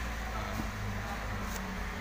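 Daihatsu All New Terios 1.5-litre four-cylinder engine just started and idling steadily, a low even hum heard from inside the cabin, with a brief click about one and a half seconds in.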